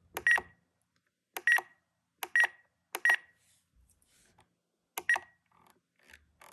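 Spektrum NX radio-control transmitter giving five short, high-pitched beeps, irregularly spaced, as its scroll roller is worked to step through the menus.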